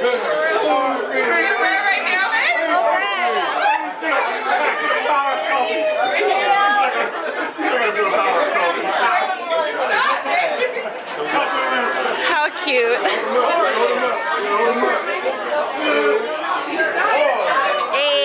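Several people talking over one another around a table: steady, lively group chatter.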